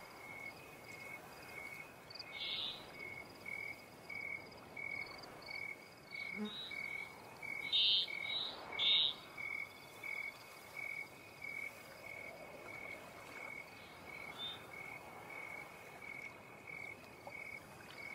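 Night ambience of an insect chirping steadily, somewhat under twice a second, with a few louder frog calls about two seconds in and around the middle.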